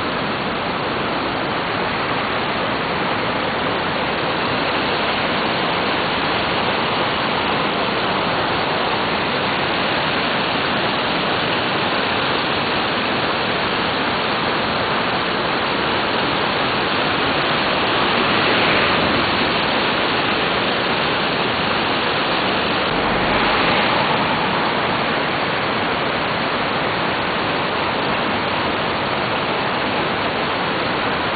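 Steady rush of a river in flood, swollen with rainwater. The rush swells briefly twice in the second half.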